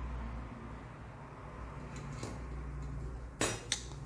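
Two quick metallic clinks about three and a half seconds in as a perforated sheet-metal case lid is set down against the case, over a low steady hum.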